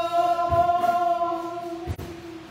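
Gospel music: a long sung note is held steady over a low drum beat, and the note fades out near the end.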